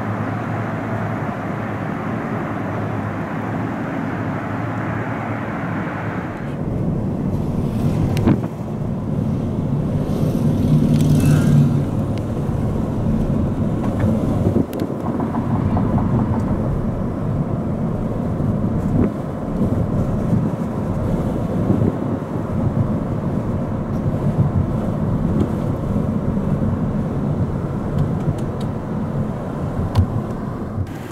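Outdoor street sound for the first few seconds. It then cuts to a steady rumble of tyre and engine noise heard from inside a moving car, which swells for a couple of seconds near the middle.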